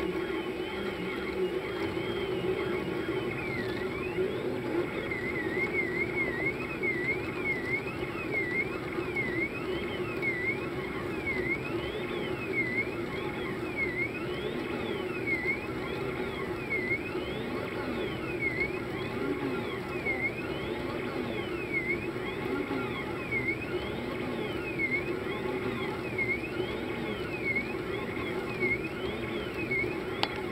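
Stepper motors of a Rostock delta robot 3D printer driving its three carriages, whining in pitches that rise and fall over and over as the arms speed up, reverse and slow down. The tones move in quick short wiggles a few seconds in, then in slower V-shaped sweeps about every second and a half, over a steady low hum.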